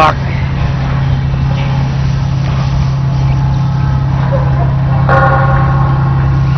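A steady low engine drone, holding one pitch, with a man's voice briefly at the start.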